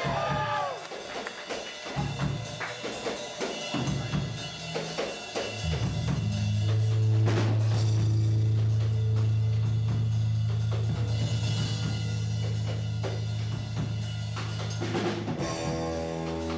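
Live rock band playing an instrumental passage: the singing ends about half a second in, drum hits follow, and from about six seconds in a loud low note is held for most of the rest, with guitar notes coming back near the end.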